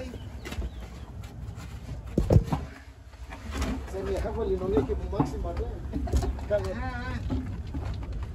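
Knocks and scraping as a person and camera are lowered on a rope down a timber-lined well shaft, brushing the wooden walls, over a low rumble. The sharpest knock comes a little over two seconds in.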